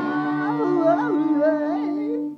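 A man humming a wordless, wavering melody over a steady held chord, with no strumming.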